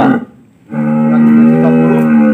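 A cow mooing: one long, steady, loud moo that starts just under a second in after a brief lull.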